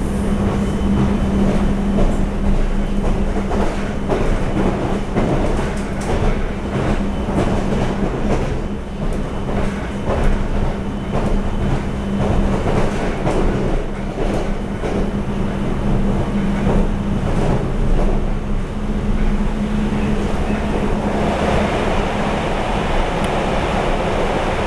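Cabin running noise of a TRA EMU700 electric multiple unit travelling at speed: a steady rumble with a low hum, and irregular clicks of the wheels over the track.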